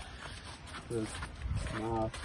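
Two low, drawn-out vocal sounds, a short one about a second in and a longer one near the end, with a moo-like quality.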